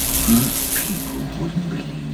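A rushing, hiss-like whoosh sound effect from an animated logo intro, fading out after about a second, with faint low tones underneath.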